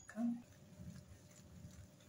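Wire whisk stirring thick batter in a glass bowl, faint and irregular. A short voice-like sound comes just after the start.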